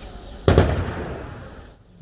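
A single heavy blast about half a second in, its echo fading away over more than a second: an explosion or heavy-weapons shot in urban fighting.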